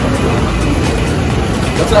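Steady low rumble of vehicles nearby, with people talking.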